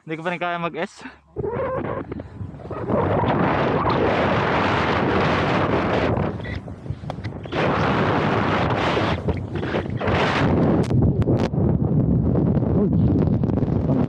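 Alpine skis hissing and scraping over packed snow at speed, with wind rushing over the microphone, a steady loud noise that eases briefly about halfway through.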